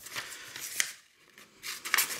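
Scissors snipping through a sheet of printed paper, with the paper rustling as it is turned. There is a short pause about halfway through.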